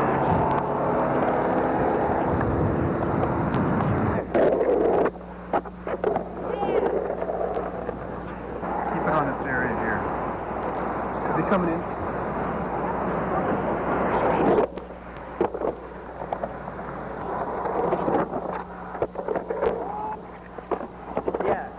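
Camera-microphone sound from old VHS camcorder footage: muffled voices and street noise over a steady electrical hum, with scattered sharp clicks. It is loudest over the first four seconds and drops about three-quarters of the way through.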